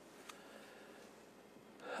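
Near silence: room tone in a pause of speech, with a faint intake of breath near the end.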